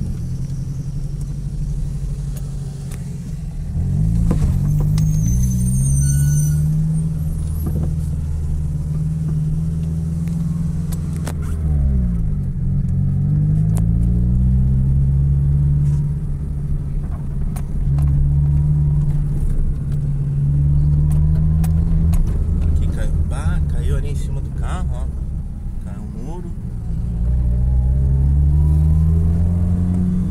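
Car engine and road noise heard from inside the cabin while driving, the engine note climbing as the car accelerates and dropping back several times with gear changes.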